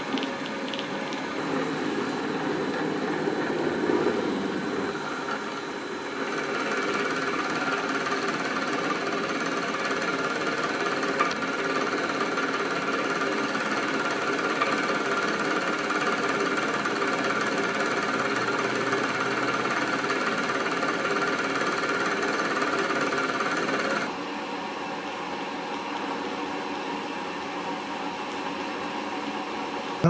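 1950s pillar drill running steadily under power, a continuous motor and spindle hum with several steady tones, running quietly on its freshly replaced bearings. The sound gets louder about six seconds in and drops back about six seconds before the end.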